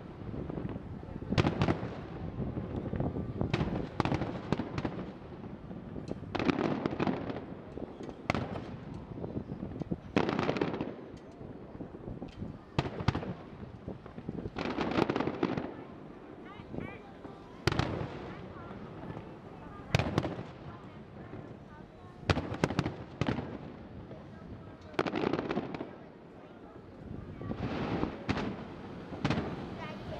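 Distant aerial fireworks bursting in an irregular string of booms, one every one to three seconds, each trailing off in a low rumble.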